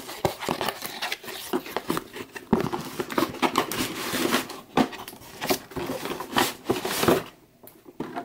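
Cardboard toy box being opened by hand: the flap pulled open and the packaging handled, with irregular scraping, crinkling and small clicks.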